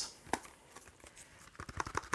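Hard plastic film case being handled: a click about a third of a second in, then a quick run of light, irregular clicks and taps near the end.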